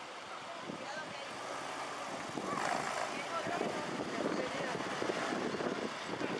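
A car driving up slowly and close, its engine and tyres growing louder about two and a half seconds in.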